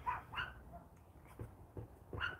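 Small dogs barking and yipping faintly, with a couple of short yips just after the start and a few weaker ones later.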